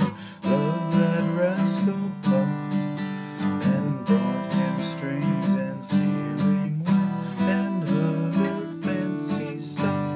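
Acoustic guitar strummed in a steady rhythm, with a man singing along to the chords.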